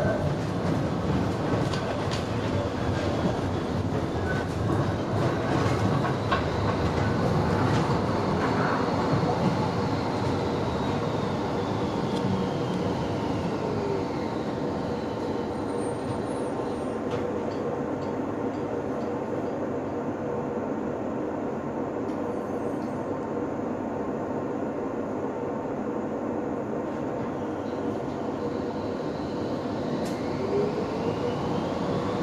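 VGF Pt-type tram heard from inside the passenger car: wheel and running noise with clicks over the track, and a falling motor whine as it slows about halfway through. It is quieter and steadier while it stands, and a rising whine near the end marks it pulling away again.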